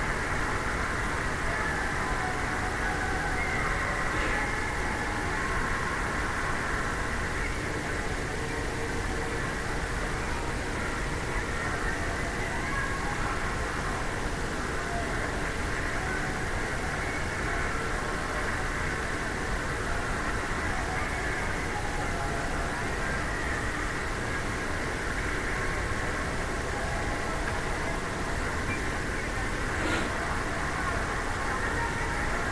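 Steady background noise of an ice hockey rink during play, with faint voices from the stands mixed into it.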